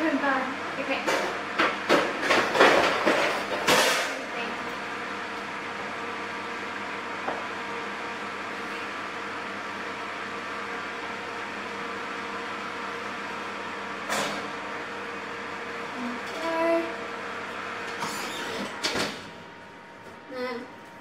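Metal baking trays and kitchenware clattering and knocking for about four seconds, then a steady hum with a few fixed tones. A few knocks near the end as the wall oven's door is shut.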